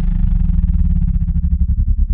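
A deep, distorted synthesizer drone with a pulsing low rumble. The pulses grow slower and more distinct as the higher sound fades away.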